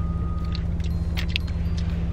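Car engine running, a steady low hum heard from inside the cabin, with a few faint clicks over it.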